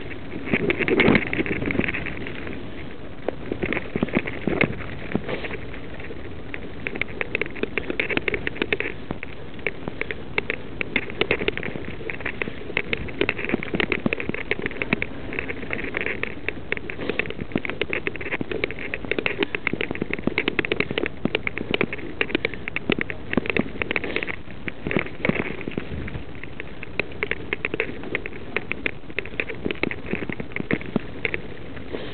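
Mountain bike riding down a loose gravel and dirt trail: tyres crunching and crackling over stones, with the bike rattling over the bumps in a constant dense clatter.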